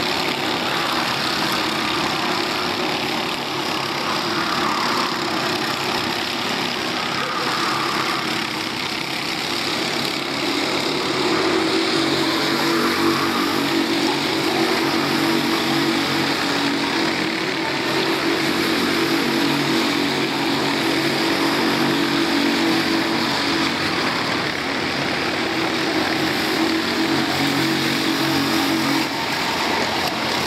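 Several racing kart engines running at speed as the karts lap the circuit, a continuous drone. About a third of the way in one engine note comes up strongly and holds steady, then drops away just before the end.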